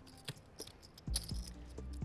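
Soft background music under a few light clicks of clay poker chips as a stack is slid forward to make a bet.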